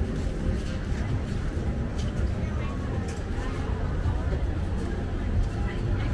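Outdoor market ambience: passers-by talking in the background over a steady low rumble.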